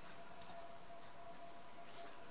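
Quiet room noise with a faint steady tone, and a few soft brief rustles of sewing thread being drawn through a stuffed fabric bow.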